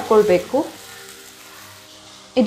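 Chopped bamboo shoots frying faintly and steadily in oil in a steel pan, stirred with a wooden spatula.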